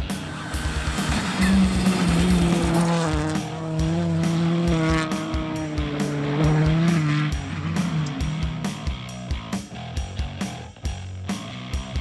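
Rally car engine running at high revs, its pitch holding fairly steady with small dips, mixed with rock music. From about eight seconds in only the music's beat remains.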